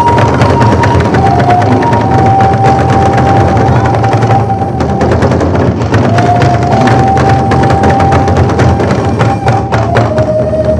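Korean barrel drums (buk) struck in a rapid, dense drum roll by a three-drummer ensemble, with long held melody notes sounding over the drumming.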